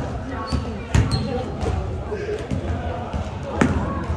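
Basketball bouncing on a gym floor, with two loud bounces, one about a second in and one near the end, amid players' voices.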